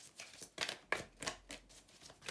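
A deck of tarot cards being shuffled by hand: a quick, uneven run of soft card flicks and slaps.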